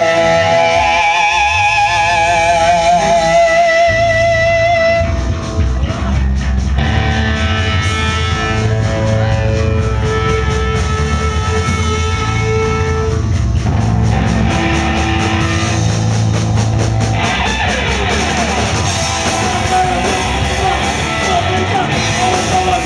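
A live hardcore band playing loudly. In the first few seconds a sustained, wavering electric-guitar line stands over the music, then the full band comes in heavier, with distorted guitars, bass and drums, about four to five seconds in.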